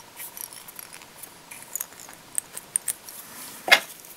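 Small clicks and light rustles of hands wrapping chenille and thread around a hook held in a fly-tying vise, with one sharper click near the end.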